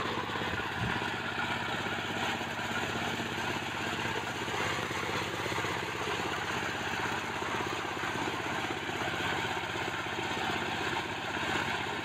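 Portable corn sheller running steadily, driven by a small single-cylinder diesel engine as it threshes kernels off the cobs.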